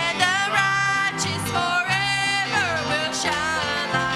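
Women singing a country-style gospel song with a wavering, gliding melody over acoustic stringed-instrument accompaniment with a steady low bass line.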